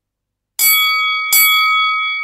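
A bell chime struck twice, about half a second in and again about three-quarters of a second later, each strike ringing on in several clear, steady high tones.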